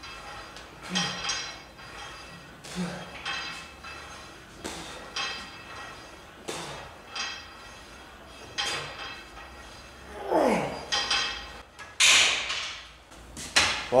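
Cable-pulley machine worked in repetitions: the weight stack clanks with a short metallic ring about every two seconds, five times. Near the end comes a falling groan of effort and a loud breath out as the set ends.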